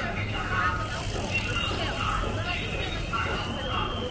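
Street ambience: passers-by, including young children, talking close by over a steady low hum of street noise.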